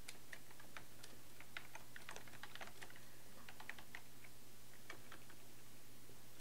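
Faint typing on a computer keyboard: irregular, quick keystrokes, several a second.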